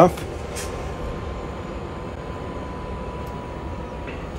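Eberspächer diesel heater's blower running steadily in its cool-down cycle after the heater has been shut off, a steady rush of air with a faint high whine.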